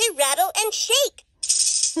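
VTech Rattle and Sing Puppy baby toy: its electronic voice sings a short melodic phrase for about the first second. A rattling sound starts about halfway through, and the toy's voice laughs 'ha' right at the end.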